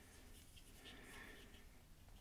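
Near silence, with faint scratching of fingers working a small plastic Mouser action figure as its stiff jaw is pried open.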